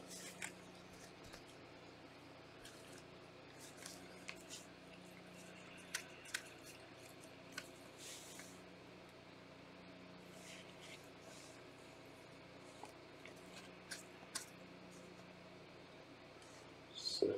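Near silence with a faint steady hum and a few scattered soft clicks and rustles from gloved hands handling a trading card, the clearest pair about six seconds in.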